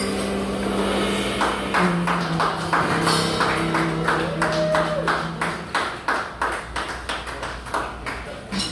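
Live jazz quartet closing a ballad: long held low notes from the tenor saxophone and bass, with a short sliding note midway, over drums tapping a steady beat of about three strokes a second. The music slowly fades as the tune ends.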